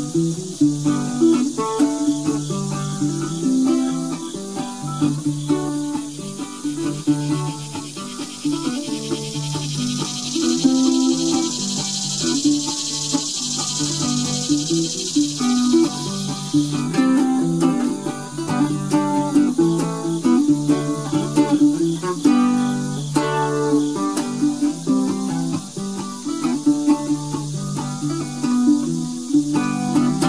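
Ukulele played solo, picking out an instrumental melody of quick single notes with no singing.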